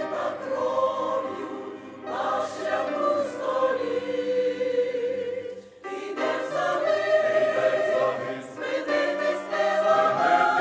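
Mixed choir of men and women singing a Christmas song in sustained chords. There are short breaks between phrases about two seconds in and again just before six seconds in.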